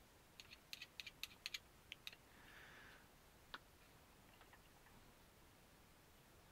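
Faint handling clicks of small differential parts: a metal gear and grease applicator tapping against each other and the plastic diff case, about ten light ticks in the first two seconds, a soft hiss, then one more click past the middle.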